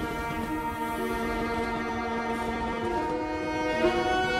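Orchestral film score of sustained bowed strings holding slow chords, the notes shifting about a second in and again near the end, over a low rumble.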